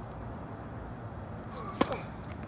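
A tennis ball struck by a racket on a forehand, one sharp hit near the end, with a short squeak just before it.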